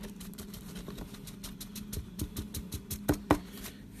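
Paper handling: a 7-inch record's lyric insert and sleeve being handled, making a run of small irregular clicks and crackles, with two sharper, louder clicks a little after three seconds in. A faint steady low hum runs underneath.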